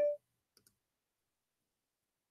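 The last of a multi-note chime dies away, then two faint, quick clicks come about half a second in.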